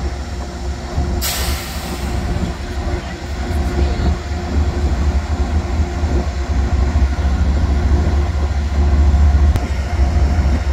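Amtrak diesel locomotive's engine rumbling steadily as it creeps along the track, growing louder as it comes closer. About a second in, a sharp hiss cuts in and fades away over about a second.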